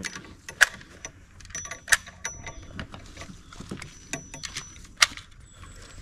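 Scattered clicks and knocks of metal and wood as a muzzle-loading blunderbuss and its loading gear are handled for reloading, with three sharper clicks spread across the stretch.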